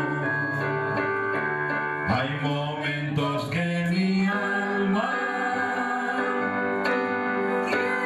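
A man and a woman singing an old evangelical chorus (corito) together into microphones, over a keyboard or organ accompaniment, holding long notes.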